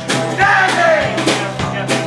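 Live band music: strummed acoustic guitar keeping a steady beat, with a sung note that bends in pitch in the first second.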